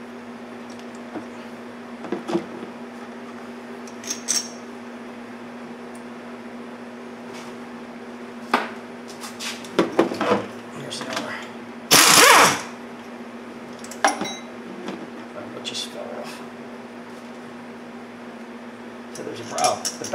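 Metal tools and parts clinking and knocking as a car's wiper linkage is unbolted, over a steady hum. About twelve seconds in, a short loud burst from a pneumatic impact wrench spinning out a bolt.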